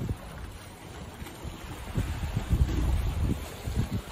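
Wind buffeting the microphone in gusts, a low rumble that eases about a second in and picks up again from about two seconds, over the wash of the sea against the rocks below.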